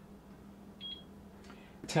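Innsky air fryer's touch control panel giving one short, high beep about a second in as a button is pressed.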